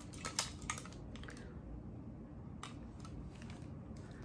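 Light plastic clicks and taps of cheap sunglasses being handled, several quick ones in the first second and a half and one more past halfway, over a low steady room hum.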